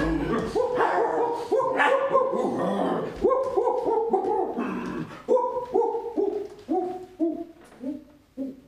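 A run of short, pitched, dog-like calls, about two a second, each falling in pitch, fading away toward the end.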